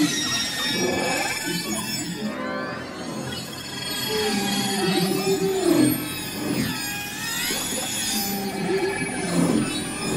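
Electronic music built from beluga whale recordings: layered squeals and whistles that glide up and down, over a few held lower tones.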